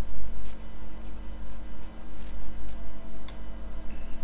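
Steady low electrical hum under faint, soft swishes of a paintbrush laying a watercolour wash on paper, about one stroke a second, with a single light click near the end.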